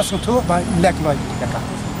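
A man talking, with road traffic in the background.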